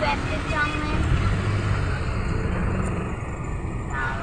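Low, steady engine rumble heard from inside a van's cabin while it idles in a traffic jam.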